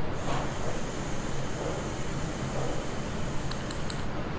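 A steady breath blown into the mouthpiece of a smartphone breathalyzer, an even hiss held for the whole few seconds of the test.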